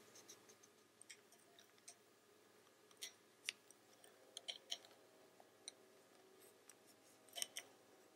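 Faint, irregular light clicks and taps of wooden double-pointed knitting needles knocking against each other as stitches are knitted two together, over near-silent room tone.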